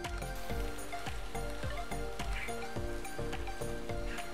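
Background music with a steady beat, over faint sizzling of cabbage and tuna sautéing in a pan.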